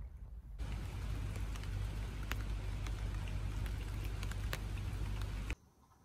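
Heavy typhoon rain pouring down, a dense steady hiss dotted with sharp drop impacts. It starts about half a second in and cuts off suddenly near the end.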